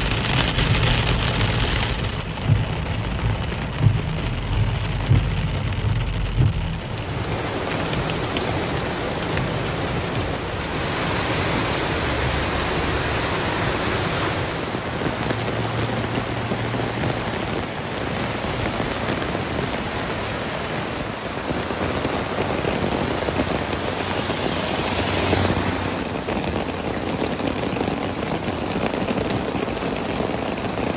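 Heavy rain falling steadily, with runoff water rushing over rock and ground. For the first several seconds it is heard from inside a moving car: rain on the windscreen over a low road rumble, with a few sharp knocks.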